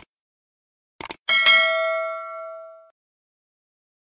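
Sound effect for a subscribe-button animation: a short click, then two quick mouse-click sounds about a second in, followed by a single notification-bell ding that rings out and fades over about a second and a half.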